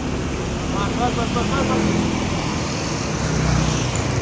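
Steady street traffic noise with the hum of a motor vehicle engine, which gets louder toward the end as a vehicle comes close. Faint voices can be heard about a second in.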